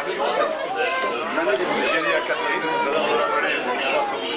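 Several people talking over one another: indistinct, overlapping chatter of a gathered group.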